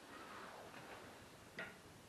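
Near silence: room tone with a few faint ticks and one sharper click about one and a half seconds in.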